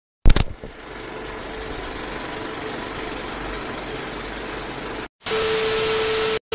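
Sound effect of an old film projector running: a sharp click, then a steady mechanical whirr with a fine rattle. Just after five seconds it cuts out and is replaced by louder TV static hiss with a steady tone in it.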